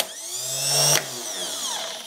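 Rebuilt 1977 BMW R100RS starter motor run on the bench off a battery. A spark crackles as the jumper wire touches the solenoid terminal, then the motor spins up with a rising whine for about a second and winds down with a falling whine. It spins freely, showing the rebuild works.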